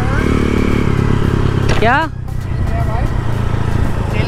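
125cc dirt bike engine running steadily under way. Its level drops a little about two seconds in as the throttle eases.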